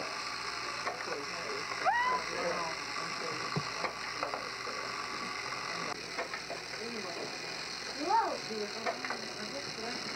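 Wordless child vocal sounds over a steady hiss: a rising call about two seconds in and another call that rises and falls near eight seconds, with faint voice sounds between.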